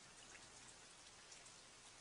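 Very faint rain with scattered tiny drop ticks, close to silence.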